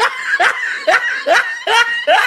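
A person laughing in evenly repeated 'ha' bursts, about two a second.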